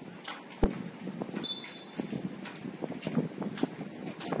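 Scattered light knocks and taps, with one sharper, deeper thud about half a second in, and a brief faint high whistle about a second and a half in.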